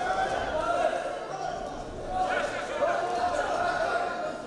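Several voices shouting over one another from around a boxing ring, echoing in a large hall, with occasional dull thuds from the boxers' punches and footwork.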